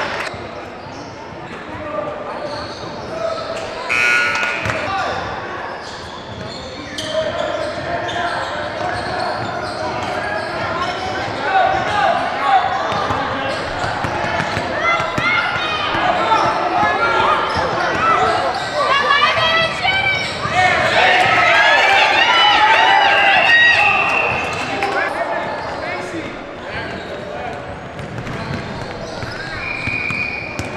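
Basketball dribbling and bouncing on a hardwood gym court amid many overlapping shouting voices of players and spectators, echoing in a large hall. The shouting grows loudest and highest about two-thirds of the way through.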